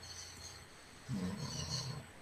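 A man's voice making a brief low hum, held for just under a second from about halfway through, faint and without words.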